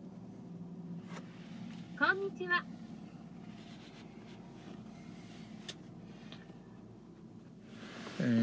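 The 3.5-litre V6 of a 2008 Nissan Murano idling steadily, heard from inside the cabin. About two seconds in, a short rising voice-like sound is the loudest thing, and there are a few faint clicks.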